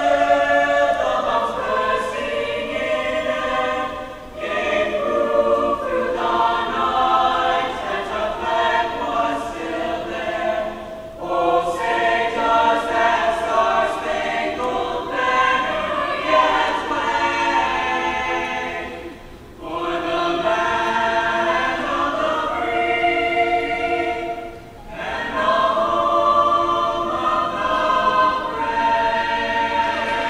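A choir singing in several voices, with sustained phrases broken by short pauses about 4, 11, 19 and 25 seconds in.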